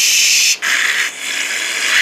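Loud hissing whoosh noises in about three back-to-back bursts, a rushing sound for the characters dashing away.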